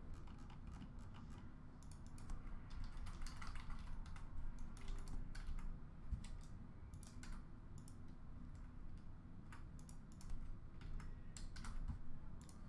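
Keyboard typing: faint, irregular keystrokes and clicks in uneven runs.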